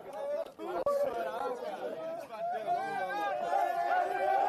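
Several men talking over one another in a tense, overlapping chatter, with a few short knocks about half a second to a second in.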